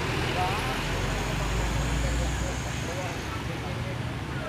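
A motor vehicle's engine rumble that builds and fades in the middle, under the faint chatter of people talking.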